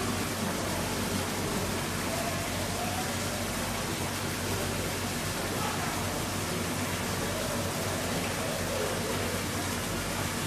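Steady rushing background noise of an aquarium hall, with a low steady hum and faint distant voices.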